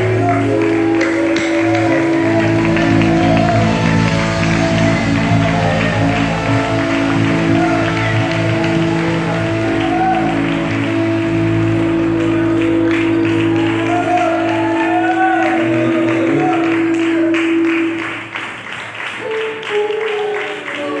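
Church worship music: long, steady held chords with voices wavering over them, dipping in level near the end.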